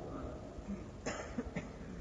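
A single short cough about a second in, with a smaller mouth click just after, over faint background hiss.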